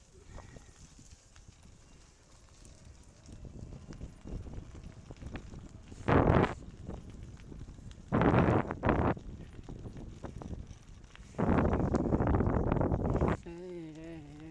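Bicycle and its mounted camera rattling and rumbling over a rough, bumpy path, in several loud bursts, the longest near the end. A short wavering whine follows at the very end.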